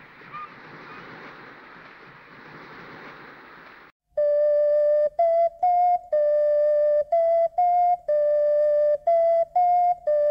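Wind and surf noise from a clifftop over the sea. About four seconds in it cuts off, and a flute starts a simple tune, loud, with a long lower note followed by short higher ones in a repeating pattern.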